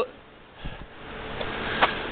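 A person drawing a breath in through the nose that grows louder over a second or so, with a faint click near the end, in a pause between spoken lines.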